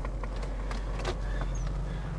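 Car engine idling, heard inside the cabin as a steady low hum, with a few faint clicks over it.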